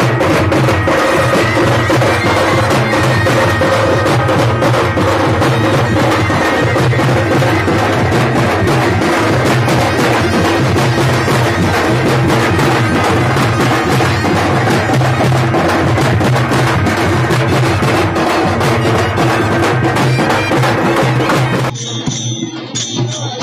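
Several large frame drums beaten fast and loud with sticks in a steady driving rhythm, with steady held tones sounding over them. The drumming cuts off suddenly shortly before the end.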